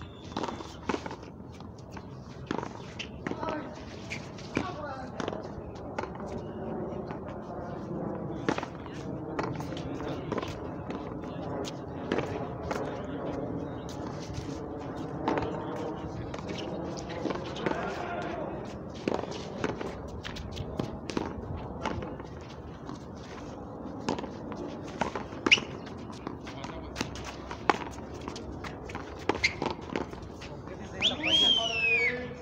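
Sharp smacks of a frontón ball being struck by hand and hitting the concrete wall during a rally, irregular throughout with the loudest about 25 seconds in, over continuous background chatter of voices.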